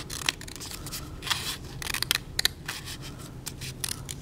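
Scissors snipping through folded paper: a quick, irregular series of short snips.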